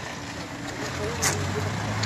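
A car driving past on the street, its engine and tyre noise a steady low hum that grows slightly louder in the second half.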